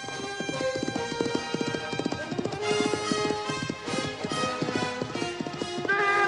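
A horse's hooves galloping away in a rapid clatter, over orchestral film score.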